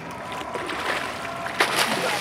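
A hooked spring Chinook salmon splashing at the surface beside the boat as the landing net scoops it. The biggest splash comes near the end.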